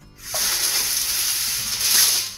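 Wax paper being pulled off the roll out of its box, giving a loud, steady, crinkly hiss that starts a quarter second in.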